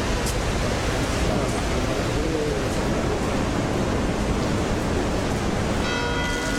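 Steady outdoor background noise, an even hiss, with faint voices now and then.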